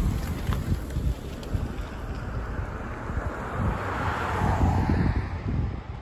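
A car drives past close by, with wind rumbling on the microphone throughout. A hiss of tyres on the road swells and fades, loudest about four seconds in.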